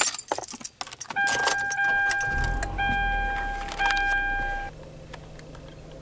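Keys jangling and clicks at the start. Then a car's dashboard chime sounds in three long tones while the engine is started with the push-button about two seconds in. The engine settles to a quiet steady idle once the chime stops.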